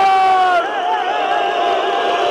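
Large basketball crowd chanting in unison, loud, holding one long note, then breaking into a wavering, up-and-down melodic line about half a second in.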